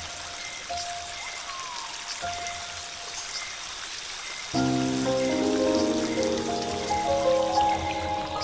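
Soft ambient music over a steady sound of running, trickling water. About four and a half seconds in, a fuller and louder chord of sustained notes comes in.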